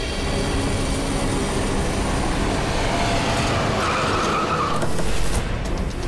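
A car driving up and braking to a stop, with a short tyre squeal near the end, under a swelling rush of noise.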